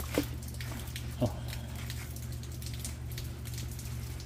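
Light rain pattering, with two short sounds falling quickly in pitch about a second apart over a steady low hum.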